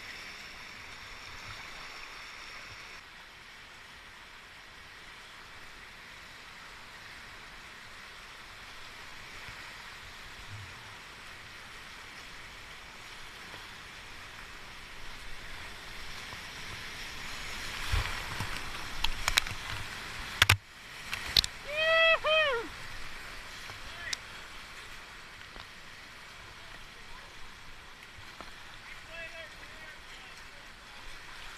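Steady rush of a flooded whitewater river around a kayak, heard close to the water. Over several seconds, a little past the middle, a run of loud splashes and knocks hits as the kayak goes through a large wave, followed by a high two-part whoop.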